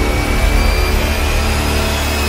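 Intro theme music, held tones over heavy bass, with a loud rushing water sound effect laid over it.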